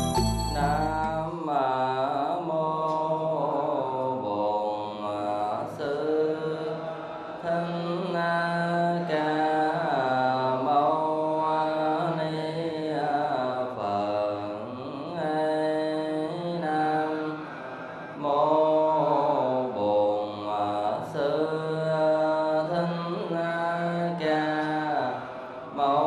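Buddhist chanting: a mantra-like recitation sung in long, sliding phrases with short breaths between them.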